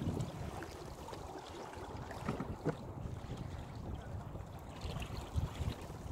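Wind buffeting the microphone over water lapping against the hull of a small sailing canoe, with a few small knocks about two and a half seconds in and near the end.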